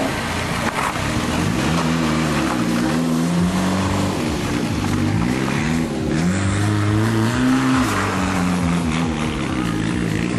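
Ford Escort Cosworth rally car's turbocharged four-cylinder engine, driven hard through a series of bends. The revs climb and drop several times as the driver accelerates, lifts and changes gear.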